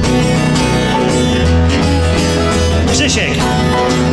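Instrumental break of an upbeat rock-and-roll song played by a small acoustic band: acoustic guitar, accordion, double bass and piano, with a steady bass line underneath.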